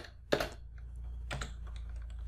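Computer keyboard keys being typed: a few scattered keystrokes, the two loudest about a second apart.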